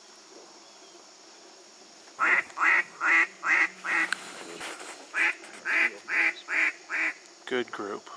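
Loud duck quacks in two runs of about five, evenly paced at roughly two or three a second, with two more near the end. A faint steady high hiss of insects lies underneath.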